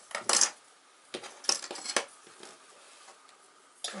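Thin wooden lath being cut into short pieces: a loud sharp snap about a third of a second in, then three more sharp clicks between about one and two seconds in.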